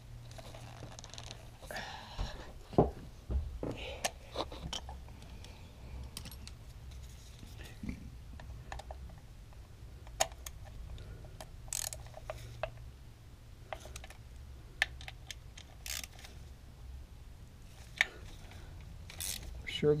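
Irregular small metallic clicks and clinks of hand tools, a socket wrench with a long extension, working on bolts in a car's engine bay, over a steady low hum.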